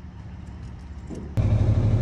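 A faint low rumble, then about one and a half seconds in a sudden jump to a loud, steady low engine drone: a farm tractor running as it tows a bale wagon.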